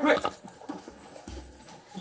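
A shouted 'quick', then faint knocks and rustling from a police body-worn camera as the officer moves, with a short low thump about a second and a half in.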